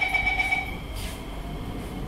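Door-closing warning tone of a C151C MRT train, a steady high electronic tone that stops under a second in, over the low hum of the train standing at the platform. A brief click follows about a second in.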